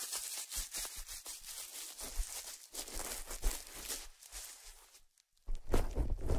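Bubble wrap crinkled and crumpled in the hands close to the microphones, a dense run of small crackles. The sound breaks off into silence for a moment about five seconds in, then starts again louder near the end.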